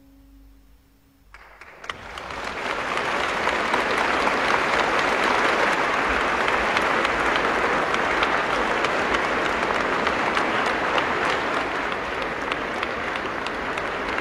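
The last piano note dies away, then a concert-hall audience breaks into applause about a second in, swelling within a couple of seconds and holding steady.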